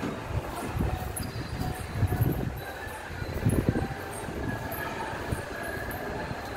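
Wind buffeting a phone's microphone: a low, noisy rumble that swells in irregular gusts, strongest about two and three and a half seconds in.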